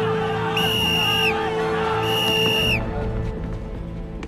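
Two high-pitched whistle blasts, each a little under a second long and about a second apart, over a crowd of men shouting 'jiayou' and background music. The crowd noise falls away after the second blast.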